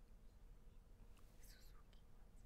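Near silence with a low steady hum, and a brief faint whisper about one and a half seconds in as two people confer quietly.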